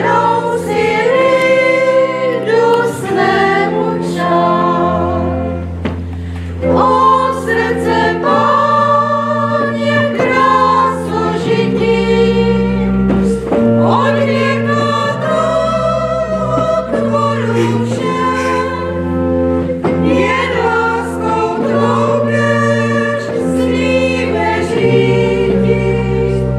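A small group of women singing a hymn, accompanied by a pipe organ whose sustained low bass notes change every second or two, in a reverberant church.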